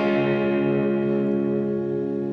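A D major chord strummed once on a semi-hollow electric guitar and left to ring steadily.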